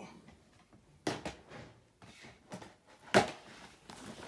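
Jute tote bag full of books being handled and opened, the books shifting inside: low rustling with a sharp knock about a second in and a louder knock a little after three seconds.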